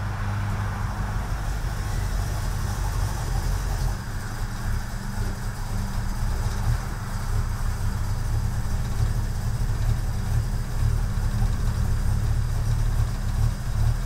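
A Ford Torino's V8 engine idling steadily, a low even hum with no change in speed.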